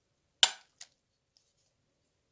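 A slotted metal spatula clinks sharply against the rim of a glass bowl as apple pomace is knocked off it, once loudly about half a second in and once more, lighter, just after.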